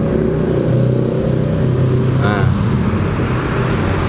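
SGM Diablo supermoto's mildly tuned 230 cc single-cylinder engine (ported and polished, with a changed cam) idling steadily.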